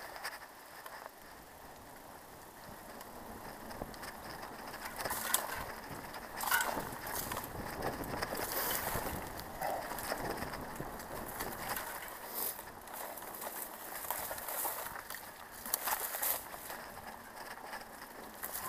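Bicycle rolling over a rough dirt track: a steady crunch of tyres on dirt, broken by sharp knocks and rattles of the bike as it jolts over bumps, loudest about a third of the way in and again near the end.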